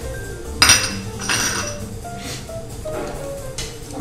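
A coffee cup and spoon clinking twice, a sharp ringing clink about half a second in and a shorter clatter just after, over soft background music.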